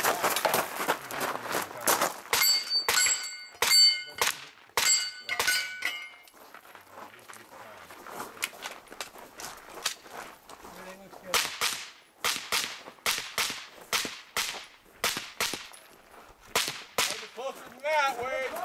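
Pistol-caliber carbine shots, too quiet for the shot timer to pick up, with steel targets ringing on each hit, about six rings between two and six seconds in. Later comes a quick string of a dozen or so sharp cracks as shooting goes on.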